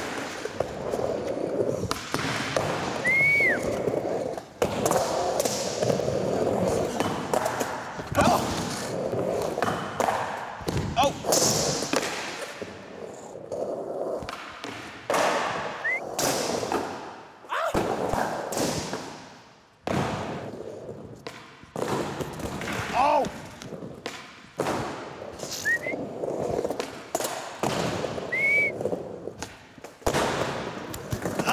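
Skateboard wheels rolling over wooden ramps and concrete, broken by many sharp clacks and thuds as the board pops and lands, and a truck grinding along a ledge, with a few short high squeaks.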